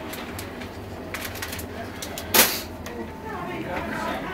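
Indistinct voices, with scattered light clicks and one short, loud burst of noise a little past halfway.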